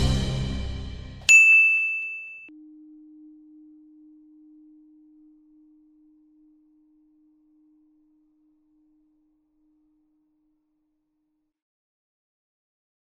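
Synthesized TV-channel logo sting: a sound hit fading over the first second, then a sharp bright ding about a second and a half in, with a low tone ringing on and fading slowly over several seconds.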